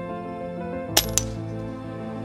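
An air rifle firing, a sharp crack about halfway through, followed a fifth of a second later by a shorter metallic ping that briefly rings, the pellet striking a steel target. Background music plays throughout.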